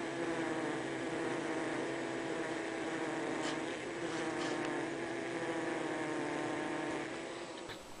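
Steady hum of a Carnica honeybee colony inside the hive, a low drone centred near 300 Hz with faint overtones, dipping slightly near the end. It is the sound of a colony in its working state, almost all the bees busy processing sugar syrup into winter stores.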